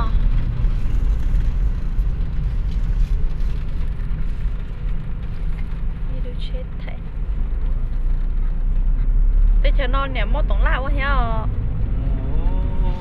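Steady low road and engine rumble of a car heard from inside its cabin while driving. A person talks briefly near the end.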